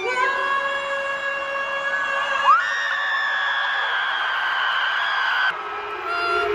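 A woman's singing voice at a live arena concert, holding a long note, sliding up to a higher held note about two and a half seconds in, and cutting off shortly before the end, over crowd noise.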